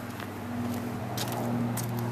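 A steady low motor hum, with a few light clicks of footsteps on plastic grid matting.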